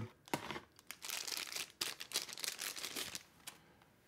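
Packaging crinkling and rustling in the hands, with a few sharp clicks, as a knife is taken out of its foam-lined case; the handling dies away near the end.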